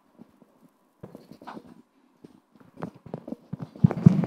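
Scattered knocks and taps on a hard surface, in an irregular footstep-like pattern, picked up by a stage microphone, growing denser near the end with a louder thump.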